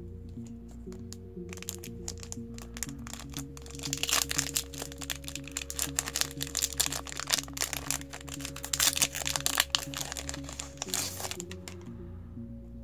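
Foil booster-pack wrapper crinkling and tearing open, with scattered crackles at first and dense crinkling from about four seconds in until shortly before the end. Background music plays throughout.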